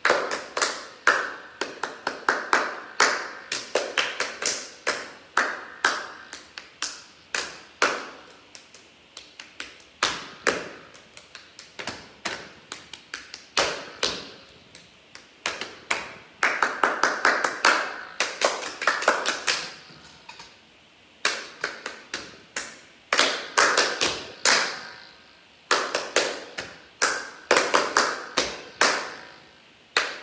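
Rhythmic hand clapping by a few people, mixed with pats of hands on thighs, played as short rhythm patterns with brief pauses between them.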